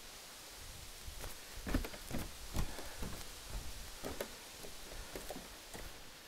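Irregular footsteps and scuffs of shoes on bare rock, with faint rustling.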